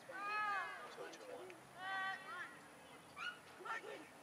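A high-pitched voice gives two drawn-out calls, each about half a second long and rising then falling in pitch: one near the start and one about two seconds in.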